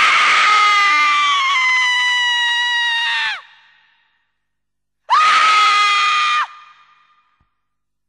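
Two long, loud, high-pitched screams. The first lasts about three and a half seconds and sinks slowly in pitch. The second, a couple of seconds later, is shorter and held steady. Each trails off in an echo.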